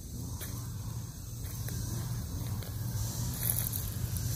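A steady low rumble with a few faint, soft taps.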